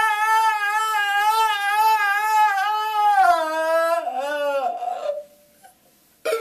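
A man's voice belting one long, high held note with a wide vibrato, unaccompanied. The note steps down in pitch about three seconds in and again about a second later, then fades out about five seconds in.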